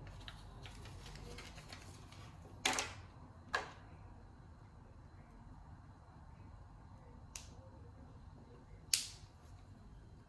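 Small hard plastic toy basket pieces being handled and pressed together: four sharp clicks, two about a second apart near three seconds in, a fainter one later and a loud one near the end, over faint rustling of the parts.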